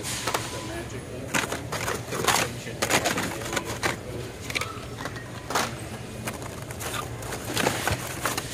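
Plastic blister-carded Hot Wheels toy cars clattering and rustling as they are flipped through by hand in a bin, an irregular run of sharp plastic clicks and cardboard scrapes over a steady low hum.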